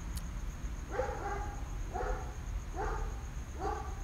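A dog barking over and over, about once a second, with four short barks in a row.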